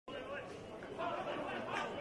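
Indistinct chatter of several voices, talk that cannot be made out.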